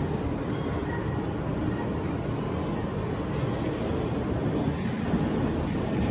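A steady low rumble of noise with no distinct events.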